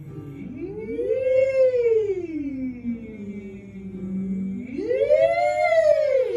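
Women's voices singing a 'wee' vocal warm-up slide. Each slide glides smoothly up from a low note and back down, twice. A low note is held between the two slides, and the second slide climbs higher than the first.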